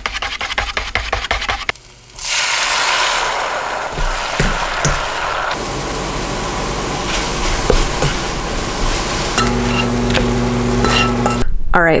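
A wire whisk beats eggs in a paper bowl with quick rhythmic strokes for about two seconds. Then scrambled eggs with spinach sizzle steadily in a frying pan. A steady low hum comes in near the end.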